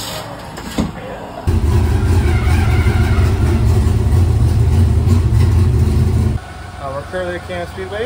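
An engine running steadily and loudly, most likely the dirt modified race car's engine. It starts abruptly about a second and a half in and cuts off suddenly about six seconds in.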